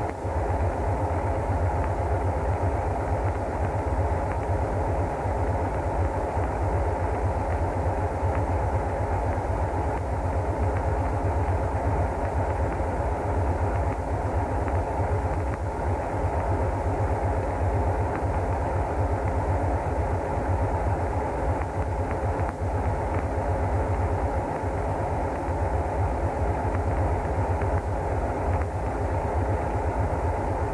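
Death-industrial music: a dense, steady low rumbling drone that runs on without a beat or a break.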